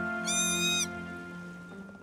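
Soft background score with sustained notes slowly fading away. A brief high-pitched tone sounds a quarter of a second in and lasts about half a second.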